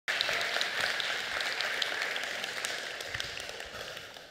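Audience applause in a hall, a dense patter of clapping that fades steadily and dies away by the end.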